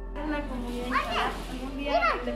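Children's voices calling out in the background: high calls that rise and then fall in pitch, about one a second.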